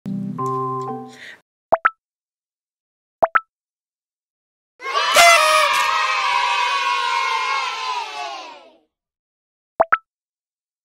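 Edited sound effects: a short musical chime, then pairs of quick cartoon pops, and about four seconds of a many-voiced cheering sound effect from about five seconds in, which is the loudest thing here. Another pair of pops comes near the end.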